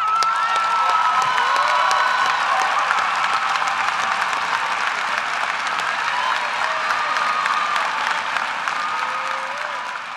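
A large audience applauding: dense, steady clapping with voices cheering over it. It starts all at once and slowly dies away near the end.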